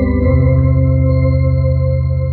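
Two-manual electronic organ playing a hymn-style study: the chord and bass change about a third of a second in, and the final chord is held.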